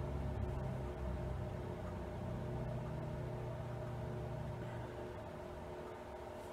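A low rumble that eases off near the end, over a steady background hum.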